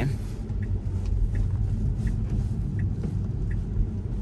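Cabin road noise of a Tesla electric car driving on a rain-wet road: a steady low tyre rumble with no engine note. Faint ticks repeat about every three-quarters of a second.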